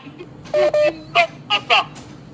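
Speech: a caller talking over a telephone line, in short broken syllables.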